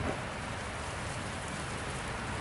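Wind noise on the microphone: a steady, rain-like hiss with a flickering low rumble underneath, and a short knock just after the start.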